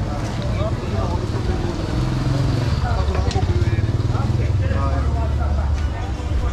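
Voices of people talking in an open-air market, with a motor vehicle's engine running underneath as a low hum that grows louder from about two seconds in.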